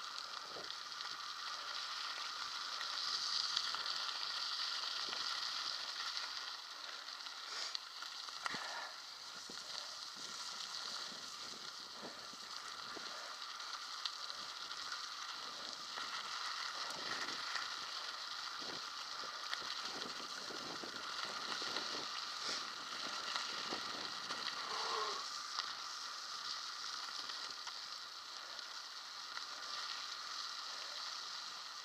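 Mountain bike tyres rolling over a loose gravel track: a steady gritty hiss crackling with many small stone clicks and knocks.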